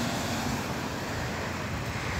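Steady rushing of wind over the phone's microphone, with a car driving by on the street.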